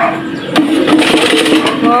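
TJean basket air fryer running with french fries cooking inside, almost done. Its fan gives a loud, steady whirring hiss with a low hum, starting about half a second in.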